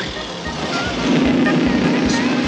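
Car engine running at speed under the show's background music, with a steady engine drone coming in about halfway through.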